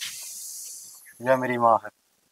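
A short, high hiss that starts suddenly and fades away within about a second, followed by a person speaking a few words.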